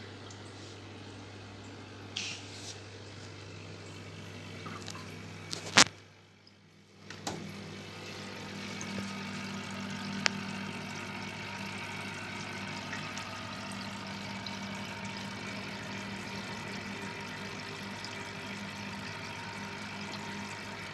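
Aquarium water bubbling over the steady low hum of the tank's pump. There is a sharp click about six seconds in, followed by a second of near silence, and a smaller click about ten seconds in.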